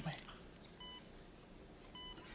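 An electronic hospital monitor giving short, faint beeps, evenly spaced about a second and a half apart: one just before the middle and another at the end.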